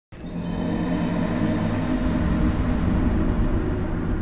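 Ominous video-game death-screen sound effect: a deep rumbling drone with low sustained tones that cuts in suddenly just after the start and holds steady.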